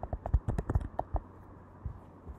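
Computer keyboard keystrokes and clicks: a quick run of about ten in the first second or so, then a single click near the end.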